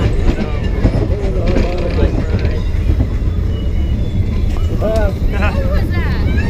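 Roller coaster train rolling along its track, a steady low rumble.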